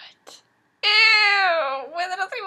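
Two faint short breathy puffs, then, about a second in, a woman's high, drawn-out wordless cry that slides down in pitch.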